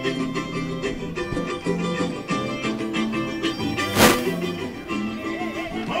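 Samba school band playing an intro, with plucked strings sounding steady chords. One loud sharp hit comes about four seconds in.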